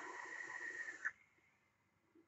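Hiss and crackle of a drag through a rebuildable dripping atomizer fired by a mechanical mod, its low-resistance flat-wire coils sizzling as air is drawn through, with a steady thin whistle. It cuts off sharply about a second in.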